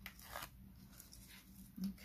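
Faint rustling and crackling of a backing liner being peeled off double-sided adhesive tape, in a few soft, short strokes.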